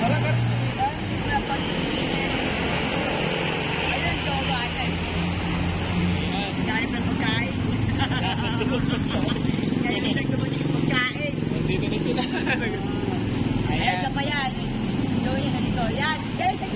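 Road traffic running steadily, with the low hum of car and motorcycle engines, and people's voices over it.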